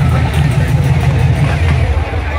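Stadium PA music with a heavy bass line, under the steady noise of a large crowd.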